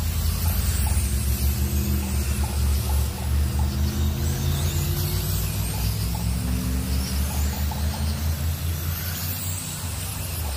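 Radio-controlled dirt oval cars racing around the track, heard over a heavy, fluttering low rumble.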